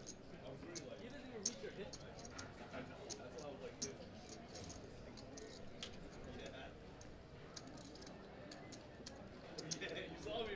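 Quiet card-room sound at a poker table: faint murmuring voices with scattered light clicks of poker chips being handled.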